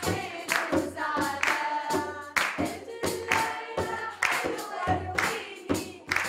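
A group of women singing a folk song together, with rhythmic hand-clapping and frame-drum beats marking a steady pulse, the strongest strokes about once a second.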